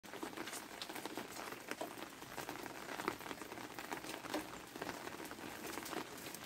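Light rain falling on an umbrella held overhead, scattered drops tapping irregularly.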